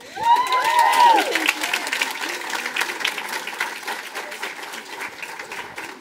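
Audience applauding, loudest in the first second and tapering off over several seconds, with a few voices whooping near the start.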